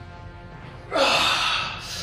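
A man's loud, forceful breath of effort, a gasp starting about a second in and fading, as he lifts a pair of heavy dumbbells. Faint background music runs beneath it.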